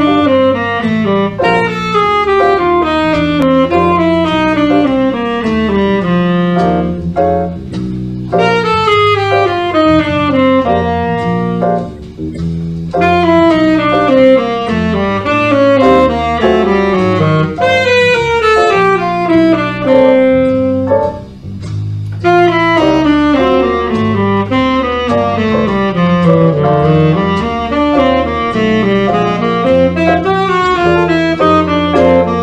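Tenor saxophone playing bebop-scale lines over an F blues (F7, Bb7, C7): quick runs of notes, mostly descending and repeated phrase after phrase, with two short breaths between phrases. Steady low bass notes of a backing track sound underneath.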